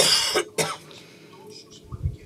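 A person coughing twice: a loud cough about half a second long, then a shorter one right after.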